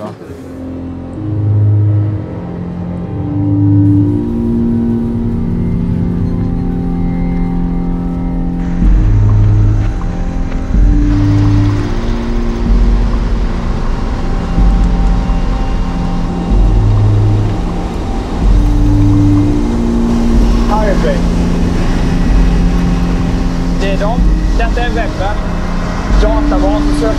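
Background music: a synthesizer score of held low notes, joined by a pulsing low beat about a third of the way in.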